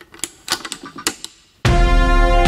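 A run of irregular typewriter-like key clacks, a title sound effect, for about a second and a half; then loud full instrumental music comes in suddenly with a deep bass.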